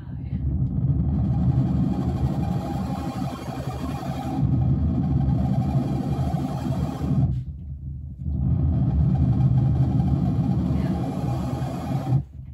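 Fuzz-distorted noise from a modular synthesizer run through a Big Muff pedal, filter and delay, its knobs turned by hand: a dense, low, rumbling texture that drops out for about a second past the middle, comes back, and cuts off suddenly at the end.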